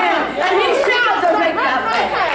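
Speech only: a woman preaching a sermon.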